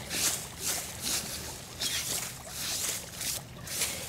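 Dirt being brushed by hand off a stone flagstone: a series of short, hissing brushing strokes, about two a second.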